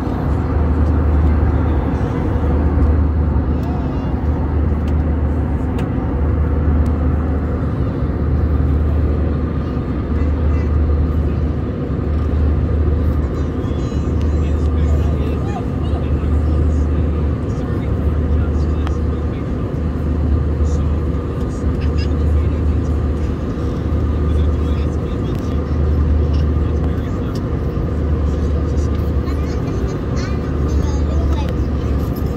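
Airliner cabin noise in flight: a loud, steady jet-engine drone with a deep throb that swells about once a second and a steady hum over it.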